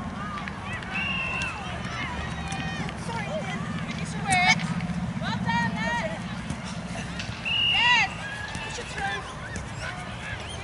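Women footballers' voices shouting short calls across the pitch, several overlapping, with the loudest shouts about four and a half seconds in and near eight seconds, over a steady low background hum.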